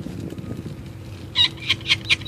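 Peregrine falcon chick calling while being handled: a rapid series of loud, high calls, about five a second, starting about one and a half seconds in.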